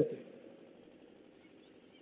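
A man's amplified speech ends right at the start, its last word dying away with a short hall echo. Then a pause with only faint, steady room noise.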